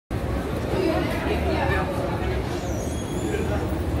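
Busy city street ambience: people talking nearby over a steady low rumble of passing traffic, with a brief high-pitched squeal about two and a half seconds in.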